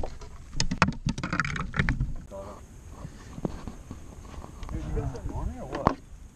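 A run of sharp knocks and rattles in the first two seconds as a landed bass is handled in a landing net on a fiberglass boat deck, followed by a man's voice near the end.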